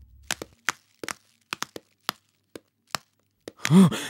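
Footsteps, a series of short sharp steps on a hard floor at about two a second, then a man's pained groan near the end.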